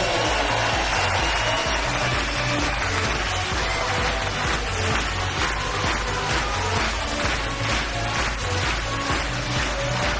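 Electronic dance music with a steady beat.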